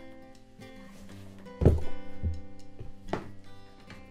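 A cowboy boot being worked off in a metal boot jack: a loud thunk about one and a half seconds in, a softer one just after and a small knock later. Sustained guitar music plays underneath.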